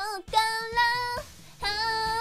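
A young woman singing a Japanese pop song over a karaoke backing track. She holds one long, steady note, breaks off briefly for a breath, and starts the next note near the end.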